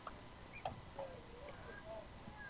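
Faint ballfield background picked up by the broadcast microphone: a few soft clicks and faint distant voices.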